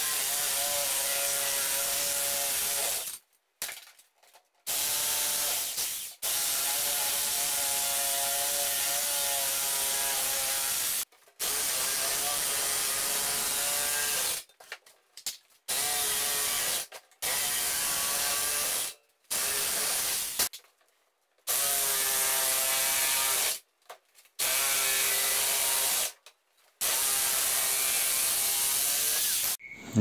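Electric sheet-metal shears cutting steel sheet. The tool runs in about ten stretches of one to five seconds each, with short silent breaks between them where the cutting stops.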